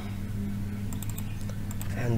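Clicking at a computer: a quick run of several short clicks in the second half, over a steady low hum.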